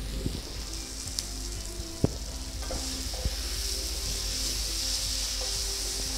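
Grated raw mango sizzling in hot oil in a non-stick kadai while a spatula stirs it, with small scraping clicks and one sharp knock of the spatula against the pan about two seconds in.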